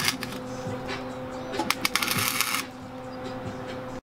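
Wire-feed welder arc crackling in short bursts on the car's sheet-metal engine bay, the longest burst from about one and a half seconds to nearly three seconds in, then stopping. Music plays underneath.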